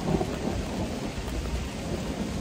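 Steady rain falling on the forest, with an uneven low rumble underneath.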